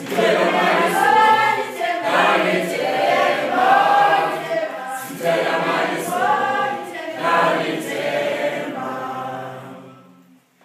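A group of schoolchildren singing together a cappella, in phrases that rise and fall; the song dies away near the end.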